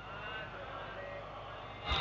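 Quiet room background with a steady low hum and a few faint, indistinct sounds.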